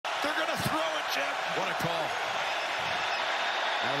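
Football field audio from a stadium broadcast: a steady wash of crowd noise with players' shouts at the line of scrimmage before the snap, and a few sharp claps or thuds in the first two seconds.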